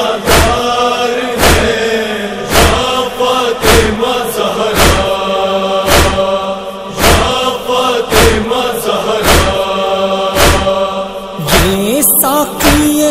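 Wordless nauha chorus of voices holding a sustained chanted drone over a steady beat of chest-beating (matam), a heavy slap about once a second.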